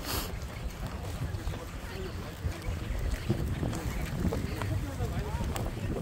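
Wind buffeting a phone microphone as a steady low rumble, with a short rustle of handling right at the start and faint voices of people nearby.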